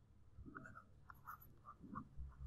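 Faint scratching of a stylus writing on a tablet, in a string of short strokes.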